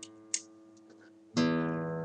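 Guitar: the low E string is plucked with the thumb as the alternating bass note of an A major pattern, starting suddenly about 1.4 seconds in and ringing on. Before it, the previous note fades away.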